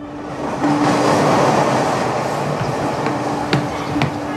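A passing train: a broad rushing rumble that swells in and then slowly eases, with a steady low tone coming and going. There is a sharp clack about three and a half seconds in.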